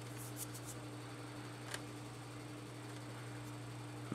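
Quiet room tone: a steady low electrical hum, with a few faint high ticks in the first second and a single faint click a little before the middle.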